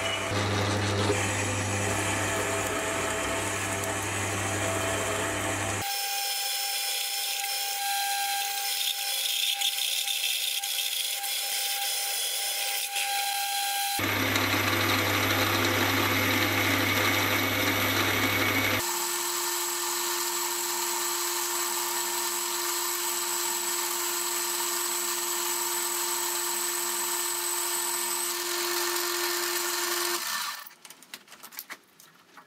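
Small metal lathe running while a steel sleeve is machined: a large drill bit boring through the 1045 steel, and a boring bar opening up the bore. The sound switches abruptly several times between the drilling, with a strong motor hum, and the boring-bar cut, which carries a steady high whine over the running lathe.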